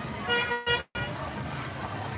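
A vehicle horn toots once, a single steady pitch lasting about half a second, from a cart passing in the parade. Just after it the sound cuts out completely for a moment, an audio dropout in the recording.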